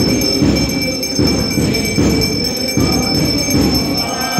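Temple aarti: bells ringing continuously over a steady low beat, about three beats every two seconds.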